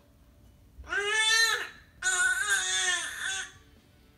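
A baby crying out twice: a short high-pitched wail about a second in, then a longer one that falls in pitch at its end.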